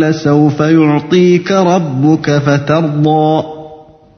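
A man chanting a Quran verse in Arabic in melodic recitation style, with long held and gliding notes, the last note fading out near the end.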